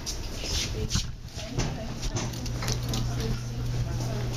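Elevator car riding with a steady low hum, with knocks and rustling from the camera being handled and brief faint voices.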